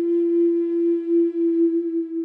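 Native American flute music: one long, steady held note that begins to fade near the end.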